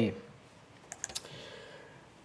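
A spoken word trails off, then three or four short, light clicks come close together about a second in, against faint room tone.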